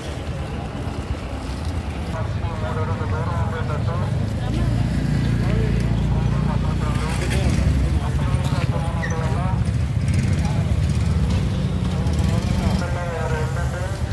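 Motor scooter engines running with a steady low hum from about four seconds in, stopping shortly before the end, over voices of people talking in a crowded street.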